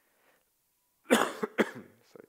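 A man coughing twice in quick succession, about a second in.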